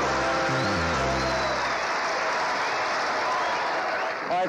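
Studio audience applauding over a game-show music cue; the music ends a little before halfway and the applause carries on alone.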